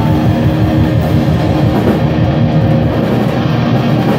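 Live rock band playing loudly and steadily: electric guitars over a drum kit.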